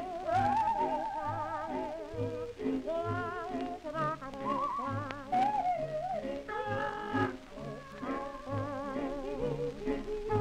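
A 1920s Victor 78 rpm shellac record of a popular song duet playing on a turntable: a melody with heavy vibrato over a steady, regularly pulsing bass accompaniment, with a little surface noise from the disc.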